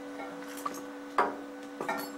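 Steady electrical hum with two sharp metallic clicks from tools being handled at a steel car door, about a second in and near the end.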